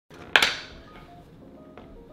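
Background music opening with a sharp hit about a third of a second in that rings away, followed by soft held notes.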